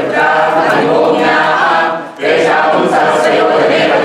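A group chanting Sanskrit Vedic mantras in unison, in a steady flowing recitation with a short pause for breath about two seconds in.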